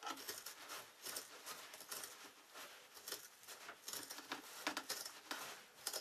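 Scissors cutting through the edge of a thick woven carpet runner: a quiet, irregular run of short snips as the blades close through the pile.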